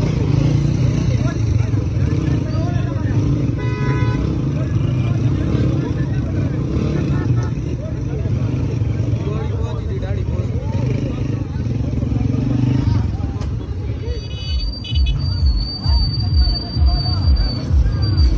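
Motorcycle engines running, among them Honda motorcycles, under men's chatter, with a short horn toot about four seconds in. From about fourteen seconds in the sound changes to a rhythmic low beat, about three pulses a second.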